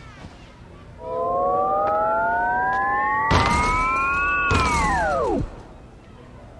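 Electronic sound effect: a tone of several pitches that glides steadily upward for about three seconds, then bends over and drops sharply away, with two crashing noise bursts near its peak.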